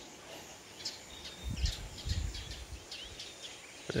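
Birds calling outdoors in the morning: a scatter of short, high chirps and quick sliding notes, with a few low thumps about halfway through.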